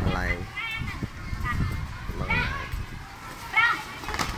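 A group of young schoolchildren's voices: background chatter with short high-pitched calls and shouts a few times.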